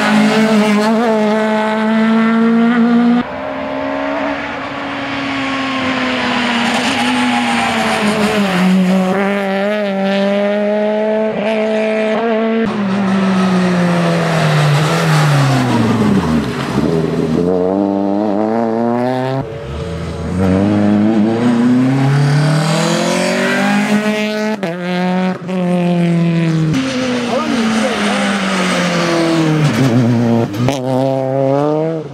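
Peugeot 208 rally car's engine revving hard through corners, the pitch climbing and dropping as it accelerates, shifts and lifts off, with a long falling pitch as it passes close by. Several separate passes follow one another, each breaking off abruptly.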